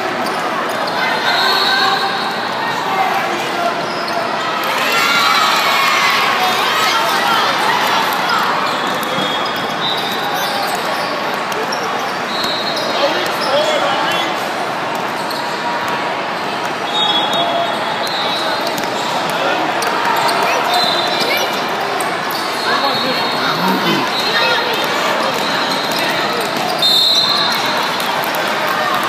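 A basketball being dribbled on a hard court, over a steady din of voices in a large echoing hall, with short high squeaks now and then.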